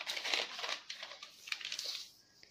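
Newspaper pattern pieces rustling and crinkling as hands fold, unfold and lay them flat.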